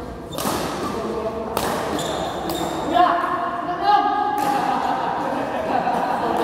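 Badminton rally: several sharp racket strikes on the shuttlecock, echoing in a large hall, with players and onlookers shouting and talking over them, loudest about three and four seconds in.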